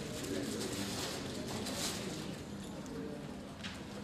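A man's voice, muffled and indistinct, coming over a room's loudspeakers from a video call, under a steady hiss.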